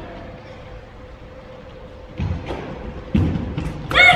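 Feet of karate sparrers thudding and stepping on a gym floor: a couple of dull thuds about two and three seconds in, then lighter knocks as a kick is thrown near the end.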